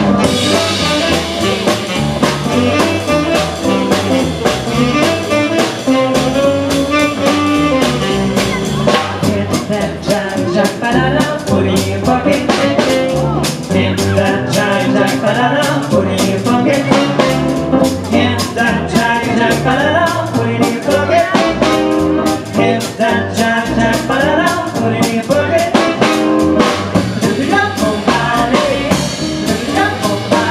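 A small swing-jazz band playing live: electric guitar, saxophone, upright bass and drum kit in a steady swing beat, with a woman singing at the microphone.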